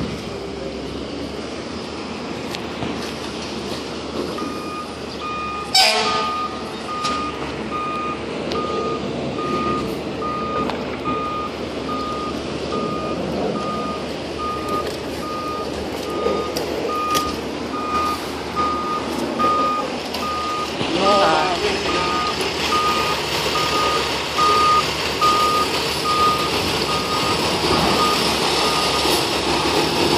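Fire truck's back-up alarm beeping at an even pace, about one and a half beeps a second, over its running diesel engine as it reverses into the firehouse; the beeping starts about four seconds in. A single sudden sharp sound comes about six seconds in.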